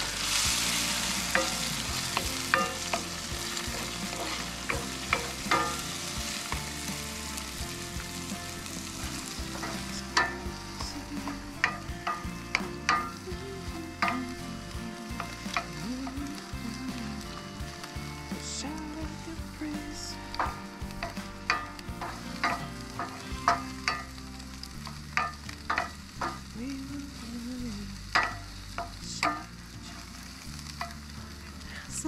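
Eggs sizzling in a skillet on a camp stove while they are stirred, with frequent short taps and scrapes of a wooden spatula against the pan. The sizzle is loudest at the start and eases over the first ten seconds or so.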